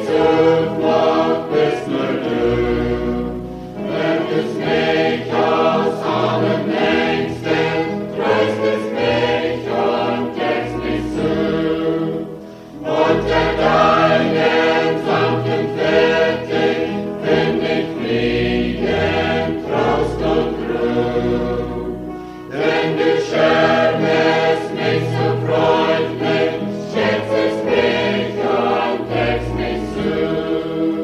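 A choir singing a hymn in long sustained phrases, pausing briefly between them.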